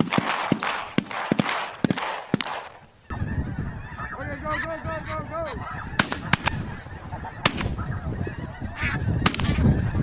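A large flock of ducks in the air, a dense rush of wings with clicks, then an abrupt change to geese calling: short honks that rise and fall in pitch, with several sharp cracks between them.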